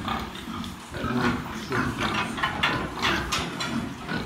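Domestic pigs in a pen calling: a quick run of short grunts and squeals from about a second in.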